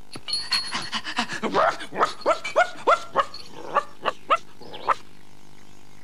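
Excited dog barking and yapping: a quick string of short barks that stops about five seconds in.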